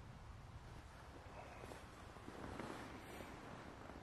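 Quiet outdoor ambience: a faint, steady low rumble, with a soft rustle in the middle.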